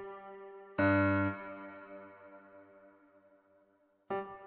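Keyscape virtual piano: a single low note struck about a second in, sounding as it is drawn into the piano roll, then ringing and fading slowly with reverb. The tail of the note before it dies away at the start.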